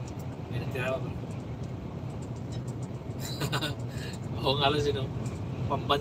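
Steady low drone of a lorry's engine and tyres heard inside the cab while cruising on a highway, with a person's voice breaking in briefly a few times.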